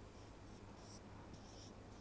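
Faint strokes of a marker pen on a whiteboard: several short, scratchy strokes as lines are drawn.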